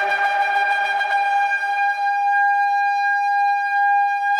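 Shofar sounding one long, steady held note.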